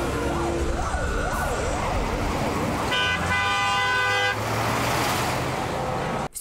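A vehicle siren wails up and down about three times a second over the low rumble of truck engines. About three seconds in, a long horn blast sounds for about a second and a half as the convoy signals its arrival.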